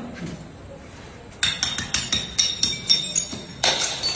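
Glass bottles and shards clinking and knocking together as they are handled and broken in a pile on a tiled floor. A rapid run of sharp, ringing strikes starts about a second and a half in.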